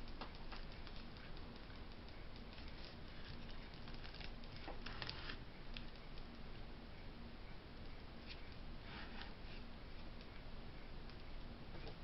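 Faint handling noises of a glued ceramic figurine being pressed and shifted by hand on a cardboard sheet: a few brief scrapes and rustles, the clearest about five seconds in and again near nine seconds, over a low room hiss.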